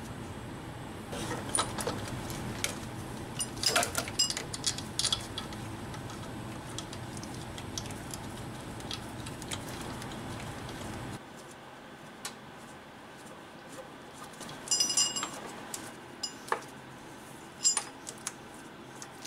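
Steel mounting bolts for a power steering pump clinking against each other and against metal as they are handled and fitted by hand, with scattered light clicks and a short run of ringing clinks about fifteen seconds in. A steady low hum in the background stops about eleven seconds in.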